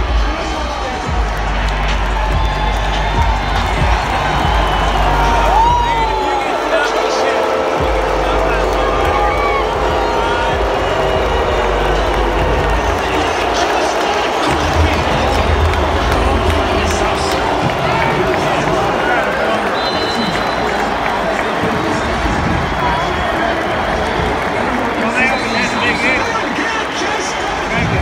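Stadium crowd chatter and scattered cheering, under a pre-game intro video's soundtrack played over the stadium's public-address speakers with heavy bass.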